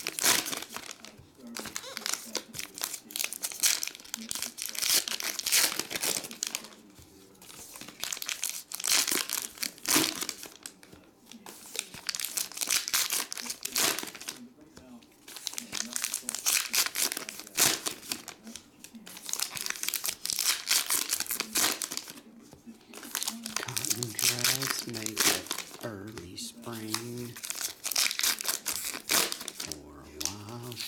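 Baseball card pack wrappers torn open and crinkled by hand, in repeated bursts of crackling with short pauses between packs.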